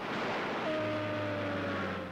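Transport aircraft engines droning over a rushing noise, the pitch settling slightly lower through the sound.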